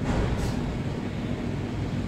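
Steady low background rumble of room noise, with a brief faint hiss about half a second in.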